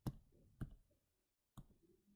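Three sharp clicks of a computer mouse, the first right at the start, the next about half a second later and the last a second after that, against near silence.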